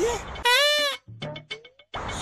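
A single short bleat, like a goat's or sheep's, about half a second long, its pitch rising then falling; with no animal in the scene, it is a dubbed-in comic sound effect. It follows the last word of a spoken line.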